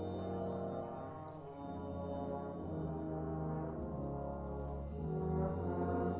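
Concert wind band playing slow, sustained brass chords with the low brass to the fore, changing chord every second or so.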